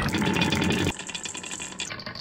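Glass marbles rolling down a carved wooden track, rumbling in the groove and clacking against one another in quick clicks. About a second in, the rumble stops and only lighter, scattered clicks go on.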